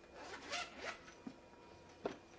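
A zipper being pulled open on a black book cover, in two short strokes within the first second, followed by a faint click.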